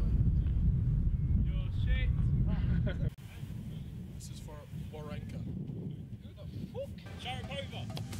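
Wind buffeting an outdoor microphone as a low rumble, dropping sharply about three seconds in to a quieter rumble, with faint distant voices.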